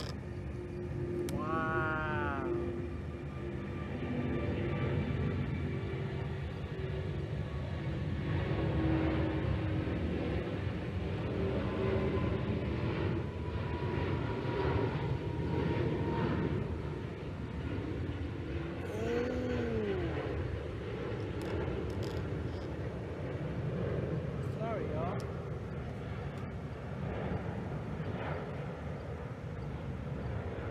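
Large jet airliner taking off and climbing out: a steady low rumble of jet engine noise that swells through the middle and eases toward the end. Two short rising-and-falling voice calls sound over it, about two seconds and nineteen seconds in.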